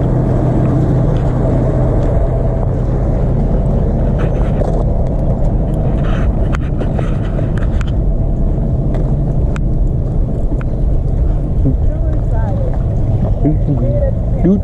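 Heavy wind buffeting an outdoor microphone, a dense low rumble with a steady low hum underneath. Faint voices come in near the end.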